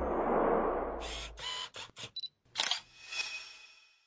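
Logo-intro sound effects: a low rumbling swell that fades over the first second and a half, then a quick run of camera-shutter clicks, and a bright shimmering swoosh about three seconds in that fades away.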